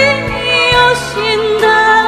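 A woman singing into a microphone over a live band. She holds long notes with vibrato and moves to a new note a couple of times.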